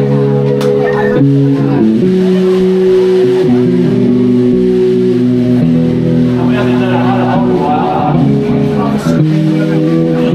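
Live rock band playing: electric guitar and bass guitar holding sustained chords that change every second or two.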